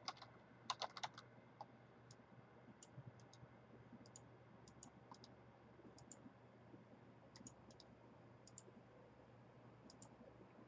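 Faint typing on a computer keyboard: a quick run of keystrokes about a second in, then scattered single clicks.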